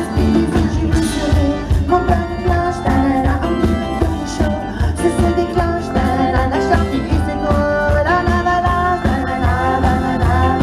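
Live pop music: a woman singing into a microphone over a band with a steady low drum beat.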